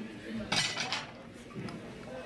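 Low room sound with a person's voice and a light clink about half a second in.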